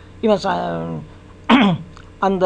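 A man's voice: a drawn-out filler 'uhh' held for most of a second, then a short, sharp throat-clear about one and a half seconds in.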